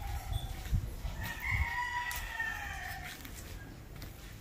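A rooster crowing once: a long call starting about a second in, held for about two seconds and falling slightly in pitch. A few low thumps sound underneath.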